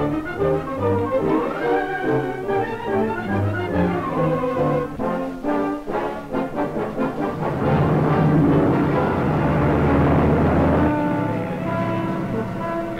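Orchestral film score led by brass, moving through changing chords, then building into a loud swell over a deep rumble that cuts off about eleven seconds in.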